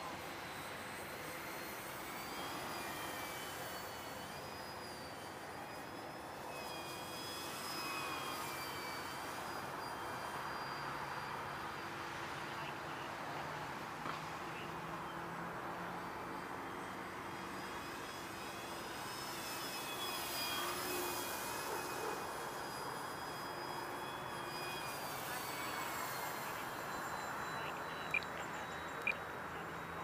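Electric motor and propeller of a Durafly T-28 V2 radio-control plane whining in flight, the pitch wavering slowly up and down as it flies around. Two sharp clicks near the end.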